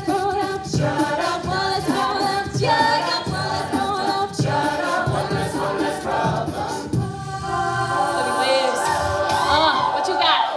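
Mixed-voice a cappella group singing a pop arrangement: a female lead over backing chords and a steady beat made by the voices. About seven seconds in the beat drops away under held chords, and a rising vocal run follows near the end.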